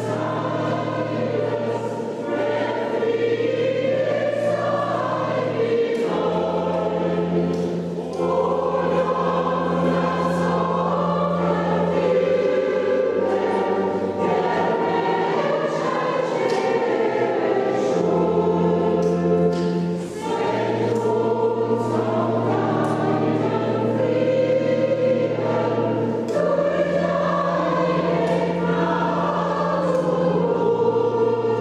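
Mixed church choir singing a hymn, over long held low organ notes that change every few seconds.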